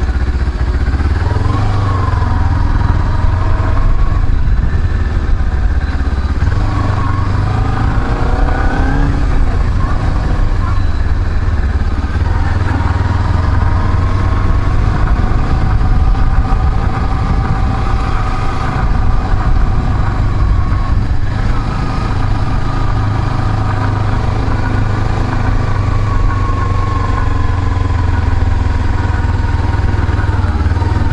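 Kawasaki Ninja 250R's parallel-twin engine running as the bike rides along a street, its pitch rising and falling several times with the throttle and gear changes, over a steady low rumble, as heard from a helmet-mounted camera.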